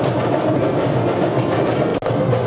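Music driven by drums and other percussion, with quick strokes throughout.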